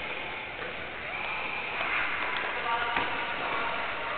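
Indistinct voices over a steady hiss of background noise in a large gymnastics hall.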